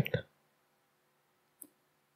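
A single computer mouse click about one and a half seconds in, opening a menu item; otherwise near silence.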